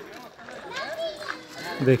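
Distant voices of people, children among them, talking and calling, fainter than the close man's voice that comes back near the end.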